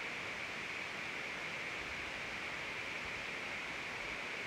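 Steady, even hiss of background room noise with nothing else standing out.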